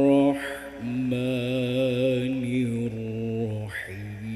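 A man's voice reciting the Quran in melodic tilawah style through a microphone: a long held note ends just after the start, a short breath, then a new long sustained phrase with a gently wavering pitch, broken by another brief breath near the end.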